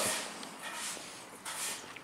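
Faint footsteps and shuffling on a concrete floor: a few soft scuffs in an otherwise quiet pause.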